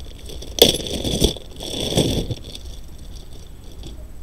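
Plastic zip-top bag crinkling as it is handled and opened, for about a second and a half starting about half a second in, then quieter rustling.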